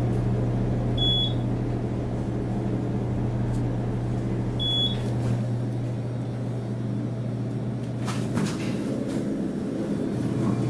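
Elevator cab travelling up: a steady low hum runs throughout, with two short high beeps, about a second in and again just before five seconds. A few brief clicks come near the end.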